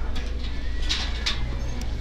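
Items in a metal wire shopping cart shifting and clinking, with two short rattles about a second in, over a steady low rumble. A brief low hum follows near the end.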